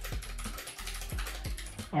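Fast typing on a Tofu68 mechanical keyboard in a custom wooden case with GMK Cafe keycaps: a rapid, dense run of keystroke clacks.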